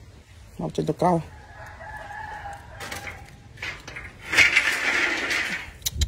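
A rooster crowing: one drawn-out call of about a second and a half, after two short voice sounds. A loud rushing noise follows near the end.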